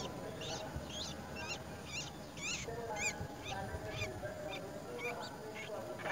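Nestling songbirds begging from the nest as the adult feeds them: a run of short, high, sweeping calls, about two a second, loudest around the middle.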